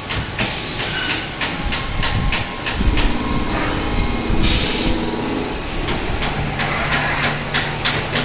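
CNC vertical machining centre changing tools and moving its table: a run of sharp clicks and clunks, a short hiss of blown air about halfway through, and a steady motor hum that sets in during the last two seconds.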